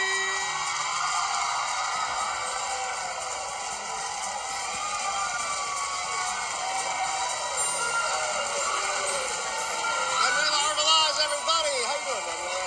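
Game-show entrance music playing over a studio audience cheering and applauding, with scattered whoops and yells.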